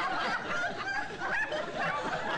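People chuckling and laughing.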